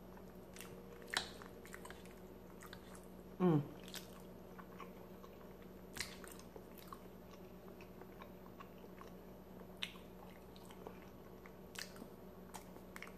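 Close-up chewing and mouth sounds of someone eating soft food, with scattered small clicks. About three and a half seconds in, a short falling 'mm' of pleasure from the eater.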